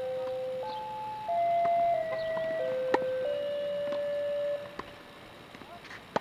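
A simple electronic tune of steady, flat notes, each held about half a second and stepping up and down in pitch, stopping a little over four and a half seconds in. A tennis ball is struck by a racket about three seconds in.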